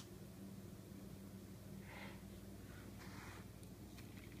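Faint steady hum of a model trolley's small electric motor, running slowly. There is a sharp click right at the start and two short breaths near the middle.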